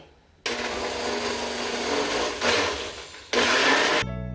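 Countertop blender running on a liquid mix of egg yolks, cinnamon syrup, condensed and evaporated milk and rum. It starts about half a second in, sags briefly about three seconds in, then runs louder again near the end.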